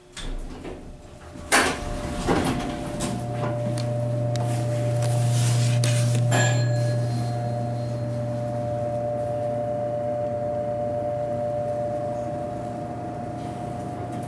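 Da-Sota hydraulic elevator arriving and working its doors: two clunks about a second and a half and two seconds in, then a steady low hum with a fainter higher whine. A short sharp click comes about six seconds in.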